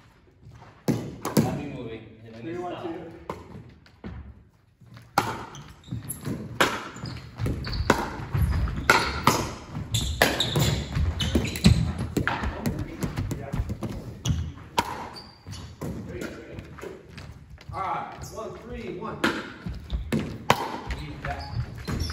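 Pickleball rally on a hardwood gym floor: sharp pops of paddles hitting the plastic ball, coming thick and fast in the middle stretch, with ball bounces and footsteps, and voices in between.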